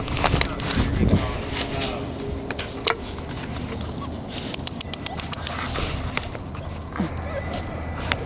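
Four-week-old Newfoundland puppies making small whines and squeaks, with a quick run of sharp clicks in the middle and a short falling whine near the end.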